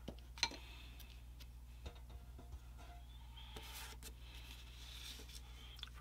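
Quiet handling noise at a hobby bench: one sharp click about half a second in, then a few light taps as a plastic CA glue bottle and small resin parts are handled and set down, over a steady low hum.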